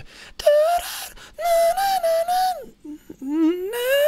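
A man singing a wordless demonstration: high held notes, then a slide from a low note up into a high one. The high notes sit at the top of his range and come out a bit rough.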